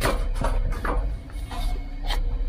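Steady low machinery rumble from air-handling equipment, with several sharp knocks and clicks scattered through it.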